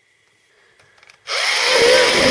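Electric pencil sharpener grinding a pencil: a few faint clicks as the pencil goes in, then the motor and cutter start loudly a little past halfway and keep running with a wavering whine.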